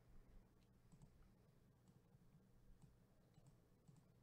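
Near silence with scattered faint clicks from a computer keyboard and mouse as the on-screen break list is edited, over a steady low hum.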